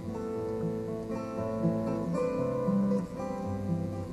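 Background music: an acoustic guitar strumming and picking chords, the notes changing every half second or so.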